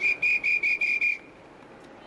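A whistle blown in six short, quick, evenly spaced high blasts, about five a second, which stop abruptly just over a second in.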